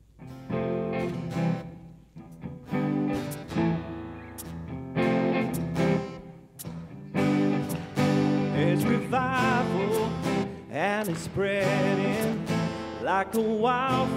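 A live worship band starts a song: strummed acoustic guitar chords with keyboard, drums and electric guitars, in a country-style feel. About halfway through, a wavering lead melody comes in over the chords.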